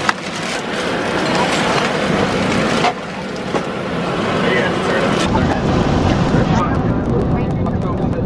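A plastic bag crinkling and rustling close to the microphone, with a sharp click near the start and another about three seconds in. From about five seconds in a deep, steady rumble of aircraft cabin noise grows louder under it, with passengers talking.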